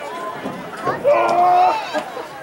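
A voice shouting one long, drawn-out call about a second in, over background chatter.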